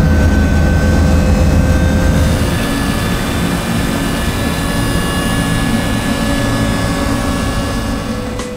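Steady mechanical drone of the equipment filling a radiant-floor heating loop with green coolant: a low hum under a few steady whining tones, easing slightly a couple of seconds in.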